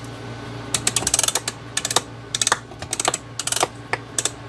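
Ratchet pawl of a homemade clock mainspring winder clicking in several short rapid bursts as the crank is turned, winding the mainspring tighter so the retaining clamp can be taken off.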